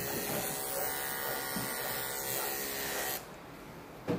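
Electric dog grooming clippers buzzing steadily while trimming a Yorkshire terrier's ear tips, switching off suddenly about three seconds in.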